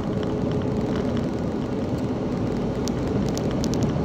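Car cabin noise while driving: a steady low rumble of engine and tyres on the road. A few light clicks come in near the end.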